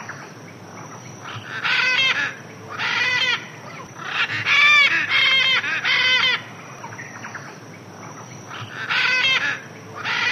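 Large birds calling in loud, harsh squawks of about half a second each, with a quick run of three in the middle, over a steady faint background hiss.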